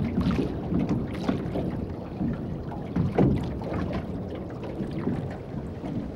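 Water slapping against the hull of a small open metal boat at sea, with wind on the microphone and a few brief, irregular knocks.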